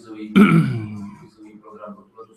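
A man clears his throat once, loudly, about a third of a second in, the sound falling in pitch as it dies away.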